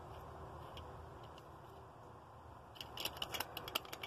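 A doorbell button pressed by hand, making a quick run of sharp clicks near the end and no chime: the doorbell is not working. Before the clicks there is only a faint hush.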